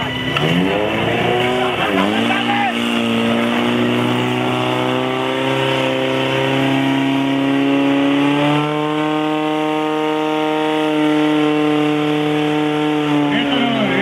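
Portable fire pump's engine revving hard: its pitch shoots up, dips for a moment, then climbs steadily and holds high while it pushes water through the hoses to the nozzles. Near the end the revs drop.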